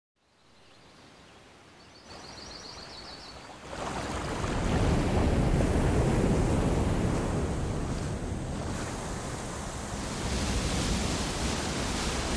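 Rushing water, a waterfall's steady roar, fading in from quiet and swelling in steps to full strength a few seconds in. Faint high chirping is heard early on.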